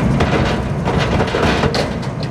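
Kubota SVL90 compact track loader's diesel engine running steadily under load as its grapple sets big log rounds into a truck bed, with several sharp knocks and clunks of wood against wood and metal.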